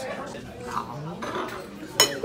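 Cutlery and dishes clinking on a dining table under murmuring voices, with a sharp knock at the very end.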